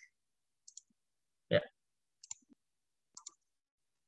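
Three quiet computer mouse clicks about a second apart, each a quick double tick.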